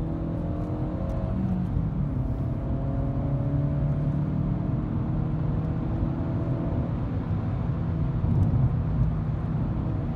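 Seat Ibiza 1.4 16-valve four-cylinder petrol engine heard from inside the cabin while driving, its revs climbing slowly under acceleration in two runs, over a steady drone of engine and road noise.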